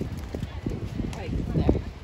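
Beach volleyball in play: irregular dull thumps, the loudest about three-quarters of the way through as the ball is struck, over people's voices.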